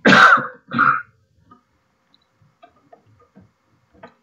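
A man coughing to clear his throat: two harsh bursts in the first second. After that there are only faint scattered ticks.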